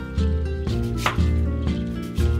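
Chef's knife slicing through a stone fruit and knocking on a wooden cutting board, one crisp cut about a second in. Guitar music with a steady beat plays throughout and is the louder sound.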